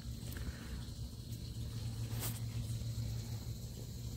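Pontoon boat's outboard motor idling with a steady low hum.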